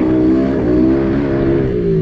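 Pit bike engine running at fairly steady revs, its pitch rising and falling slightly as it is ridden.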